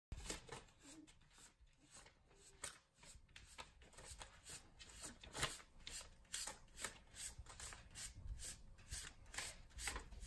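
Paper banknotes rustling as they drop onto a rug and onto a cat lying among them: a run of faint, soft crackles, about two to three a second.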